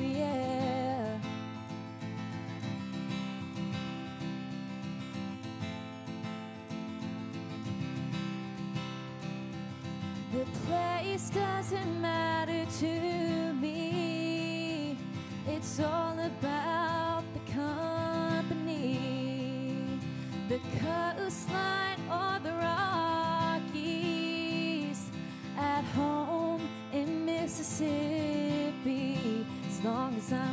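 A woman singing a slow song to her own acoustic guitar strumming. The first several seconds are guitar alone, and her voice comes back in about a third of the way through.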